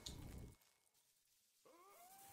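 Faint anime soundtrack audio: a brief noise dies away in the first half-second, then near silence, and near the end an animated wolf's howl begins, gliding up and settling into a long held note.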